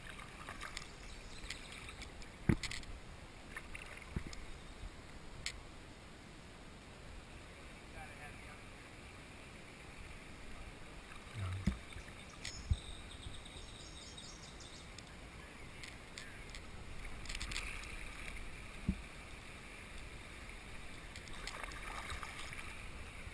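Kayak paddling on a slow river: paddle strokes and water lapping against the hull, with a few sharp knocks, the loudest about two and a half seconds in.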